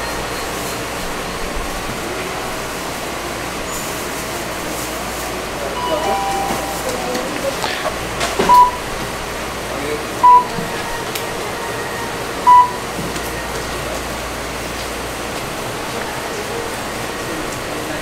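Checkout register beeping: three short, identical electronic beeps about two seconds apart over the steady hum of a convenience store.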